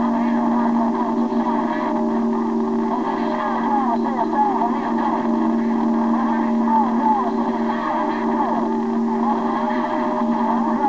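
Yaesu transceiver receiving a crowded AM CB channel on skip: several steady whistling tones hold their pitch under a jumble of overlapping, warbling voices too garbled to make out.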